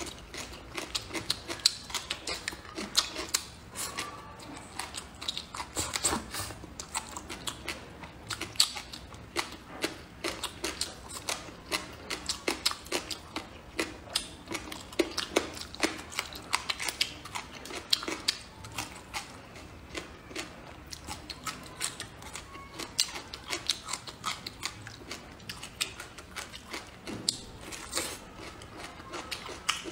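Close-miked chewing and wet mouth smacking of soft, saucy braised food, with many quick, irregular clicks throughout.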